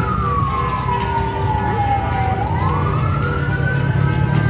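A wailing siren: its pitch falls slowly for about two seconds, then climbs quickly back up and holds high near the end, over a steady low rumble of street noise.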